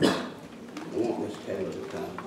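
A sharp knock or thump right at the start, followed by a couple of brief, indistinct vocal sounds in the room.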